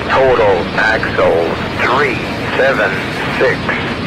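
Freight train cars rolling past over a steady low rumble, while a wayside defect detector's synthesized voice reads out its report over a radio scanner.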